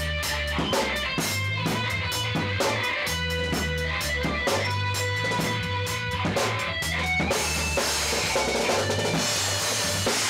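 Live band jam: a drum kit keeping a steady beat under an electric bass and an electric guitar playing held, sustained notes. About seven seconds in, a wash of cymbals fills in over the top.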